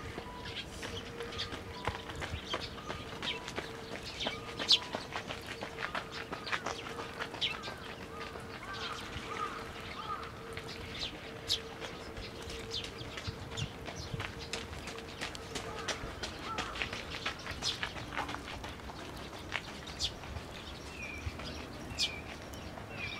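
Fledgling Eurasian tree sparrows giving many short, sharp chirps in quick succession, the calls of young birds begging to be fed. A faint steady hum runs beneath them and stops about three-quarters of the way through.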